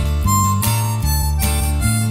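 Country music: a harmonica plays a melody of held notes over strummed acoustic guitar and bass.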